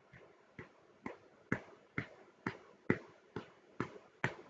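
Regular, evenly spaced ticking like a clock, about two sharp ticks a second.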